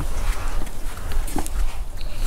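Steady low rumble of wind on the microphone, with scattered light taps of a small puppy's paws on wooden decking.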